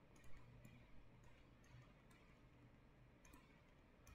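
Near silence with a few faint, irregular clicks of a stylus tapping on a tablet while handwriting characters, loudest about a third of a second in.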